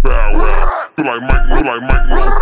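Screwed-and-chopped hip-hop: a slowed, pitched-down rap vocal over a heavy beat, cut off sharply for a moment about halfway through.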